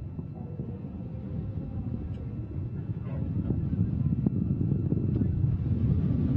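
Low rumble of an Antares rocket's first-stage engines climbing at full thrust, heard from the ground, growing louder from about halfway through.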